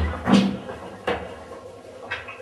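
A wooden door being opened, three short knocks and clatters in the first second or so.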